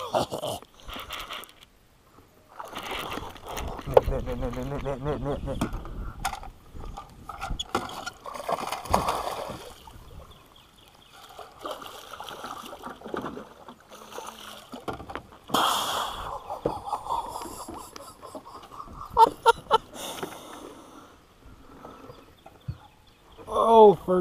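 A hooked bass thrashing and splashing at the surface beside the boat as it is reeled in on a baitcasting reel and scooped into a landing net.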